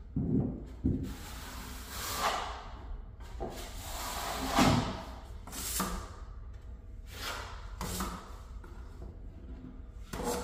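Steel finishing trowel drawn across a plasterboard ceiling, spreading and smoothing a top coat of joint compound. The strokes come as a series of short scraping swishes every second or so, with a couple of duller knocks in the first second.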